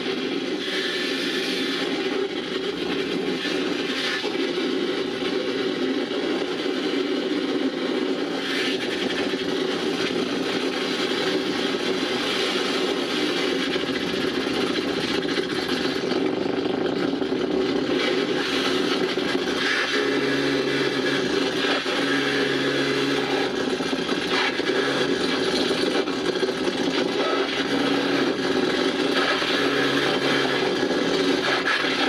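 Live experimental noise music: a dense, unbroken wall of grinding, scraping electronic noise. About two-thirds of the way in, a low hum joins, cutting in and out in pulses.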